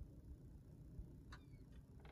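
Near silence inside a parked car's cabin: a low rumble, with a few faint ticks in the second half.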